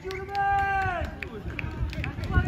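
One long shouted call from a person on a rugby pitch, held on one pitch for most of a second and then dropping away, with low rumbling and thuds underneath.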